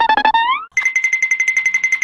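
Electronic sound effect: a short pitched tone that slides upward, then a high, steady beep pulsing rapidly, like a ringtone.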